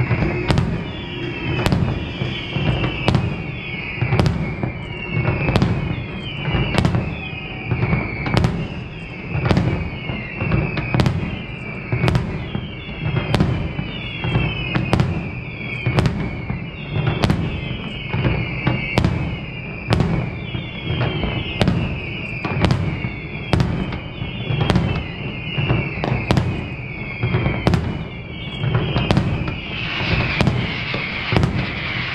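Fireworks display: a fast, evenly spaced string of sharp bangs, a little more than one a second, over a continuous low rumble, with repeated falling whistles or crackles between the reports.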